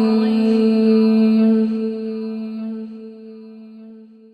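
Mantra chanting: a voice holds one long low note at a steady pitch, which fades away over the second half.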